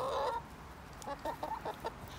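Hens clucking: a few short, soft clucks in the second half, after a drawn-out call fades out in the first half second.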